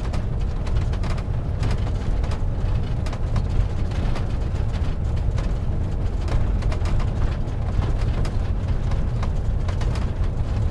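Motorhome driving along a paved road, heard from inside the cab: a steady low rumble of engine and road noise with frequent small clicks and rattles.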